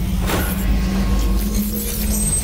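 Logo-intro sound design: a deep, steady rumble with a low held drone tone and a whoosh about a third of a second in.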